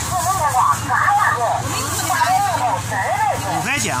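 Voices talking close by, over a steady low wind rumble on the microphone.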